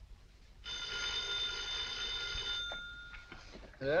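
An old telephone bell rings once for about two seconds. A few soft clicks follow as the receiver is lifted, and a man answers "Yeah?" just before the end.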